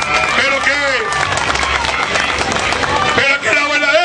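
A man speaking loudly and emphatically into a microphone over a public-address system, with crowd noise and some clapping behind him.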